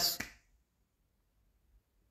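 A spoken word trailing off in the first half-second, then near silence: room tone.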